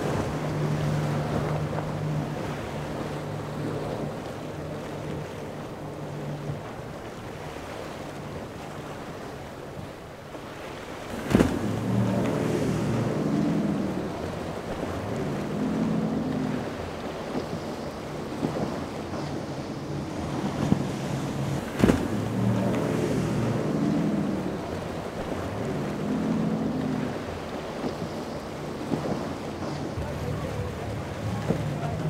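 Outboard engines on center-console boats running at speed through choppy inlet water. The engine note rises and falls every couple of seconds as the hulls ride over the waves, with spray and wind noise on the microphone. Two sharp clicks come about eleven and twenty-two seconds in.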